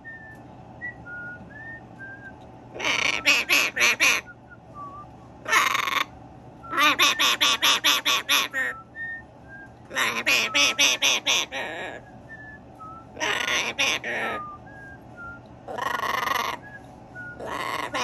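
Macaw giving loud bouts of harsh, rapidly repeated calls, about seven pulses a second, seven bouts in all with short pauses between. Faint high chirps sound in the gaps.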